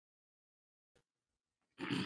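Near silence, broken by a faint click about a second in; near the end a short burst of a man's voice comes in.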